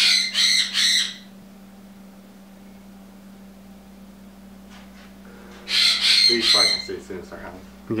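Harsh bird squawks: a quick series of three at the start and another series about six seconds in, over a steady low hum.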